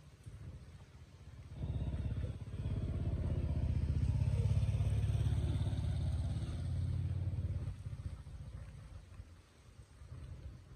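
A motor vehicle engine passing close by. It comes in about a second and a half in, grows louder to a peak around the middle and fades away near the end.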